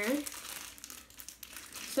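Faint crinkling, rustling handling noise as a large makeup brush is picked up and turned in the hands.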